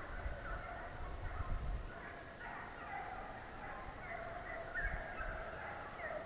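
A pack of deer-running hounds baying on a chase, many overlapping cries carrying on without a break, with low rumble on the microphone.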